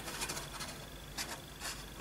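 Faint rustling and a few light scrapes of stiff cardstock being handled, as a folded card box is turned and its side flaps are shaped by hand.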